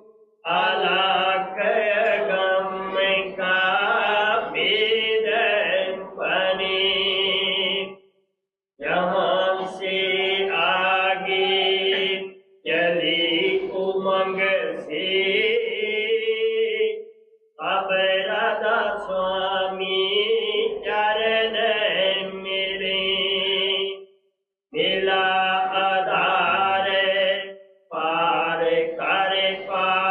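A solo voice chanting a devotional hymn unaccompanied, in about six long phrases with held notes, each followed by a brief pause for breath.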